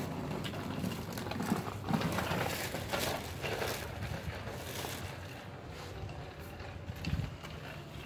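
Light rustling and soft knocks of hands handling seed potatoes and setting them down on loose potting soil in a hamper lined with garden fabric, with a dull thump about seven seconds in.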